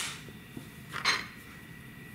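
A wooden rubber stamp knocked down into a plastic-cased ink pad: one sharp click, followed about a second later by a short, soft scuff.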